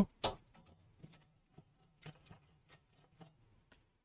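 Faint, irregular small clicks and ticks of a hand screwdriver turning a screw out of a steel drive cage, with a slightly louder click just after the start.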